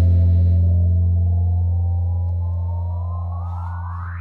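Live band music at a held, sung-free moment: a low bass note rings on and fades slowly, while a sweep climbs steadily in pitch and grows brighter toward the end.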